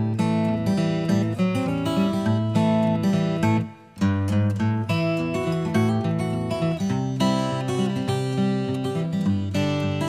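Background music: a strummed acoustic guitar playing steady chords, with a brief break about three and a half seconds in.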